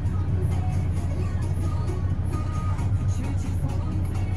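Cab radio playing disco music, heard inside the cab of a Hamm DV+ 70i tandem roller over the steady low hum of the roller's idling engine.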